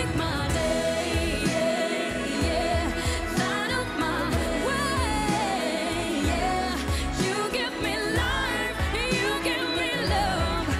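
A woman singing a pop song over a band with a steady drum beat.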